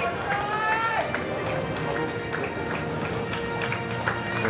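Music playing over a stadium public-address system, with sustained notes that change pitch in the first second, and a voice heard under it.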